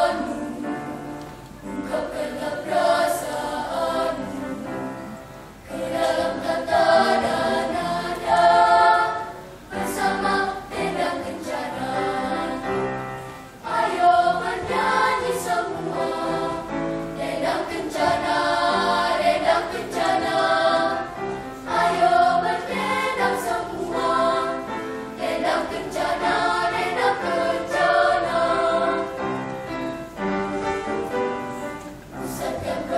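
Children's choir singing, in phrases a few seconds long with brief breaks between them.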